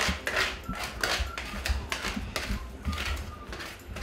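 A spatula scraping and spreading cake batter in aluminium cake tins, evening it out in repeated short strokes, about two a second.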